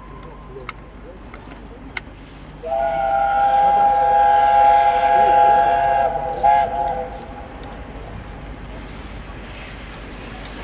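Peppercorn A1 steam locomotive 60163 Tornado sounding its chime whistle: one long steady blast of about four seconds, several notes together, with a short toot at its end.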